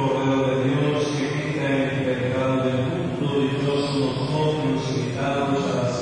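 Slow church hymn sung during a wedding mass: a voice holds long notes that change pitch every second or two.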